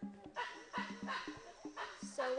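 A string of short barking calls, about five in two seconds, over steady background music.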